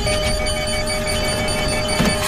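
Fighter-jet cockpit warning alarm: one steady tone with a rapid string of short high beeps over it, sounding for an engine failure caution (engine cutoff fail).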